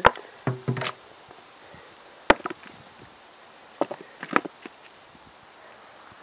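Potatoes being dropped into a plastic bucket, landing as separate knocks and taps: one at the start, a few just before a second in, a sharp one about two seconds in, and a quick cluster about four seconds in.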